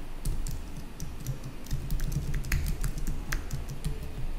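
Typing on a computer keyboard: an irregular run of quick keystroke clicks, each with a dull thud beneath it.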